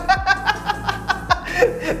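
A man laughing in a quick run of ha-ha pulses, over background music with a low drum beat.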